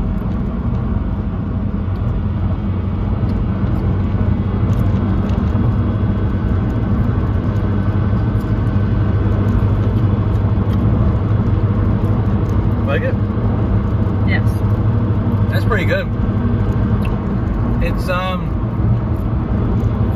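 Steady low drone of a car heard from inside its cabin, with a few short vocal sounds in the second half.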